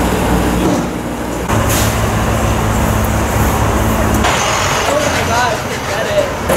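City street traffic: a low, steady rumble of idling and passing vehicle engines, heavy-vehicle rumble among them, that gets stronger for a few seconds in the middle. Near the end come a few short rising squeals.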